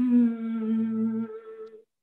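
A woman singing an unaccompanied prayer song, holding a long steady note as a closed-mouth hum at the end of a line; it dies away near the end.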